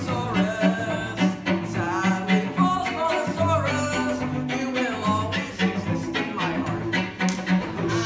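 Cello bowed in a rhythmic groove of short, repeated low notes, with the cellist singing a wavering melody over it.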